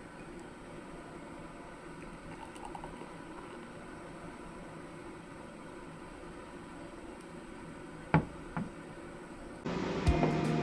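Beer poured from a medium glass bottle of Asahi Super Dry into a small glass over a steady room hum. Two short knocks on the table about two seconds before the end, and music starts just before it.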